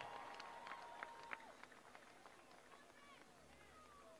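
Near silence as the music stops, with a few faint clicks in the first second or so and faint distant voices.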